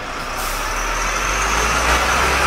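A heavy road vehicle's engine running steadily: a low rumble with a high whine that comes in about half a second in.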